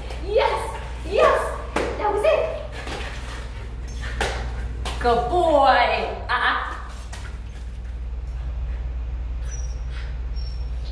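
Short wordless voice sounds in two spells, the first right at the start and the second about five seconds in, with a few sharp knocks between them. A steady low hum runs underneath.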